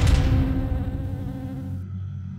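A deep cinematic impact hit, the second of two, sounding right at the start and ringing out over a low hum that fades away over nearly two seconds.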